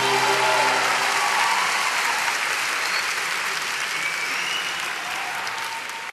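Concert audience applauding as the band's last held chord dies away in the first second or so; the applause slowly fades and then cuts off suddenly at the end.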